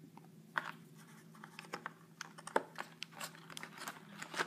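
A Jefferson nickel being pressed into its slot in a cardboard coin folder: scattered small clicks and scratches of the coin and board being handled, getting busier toward the end.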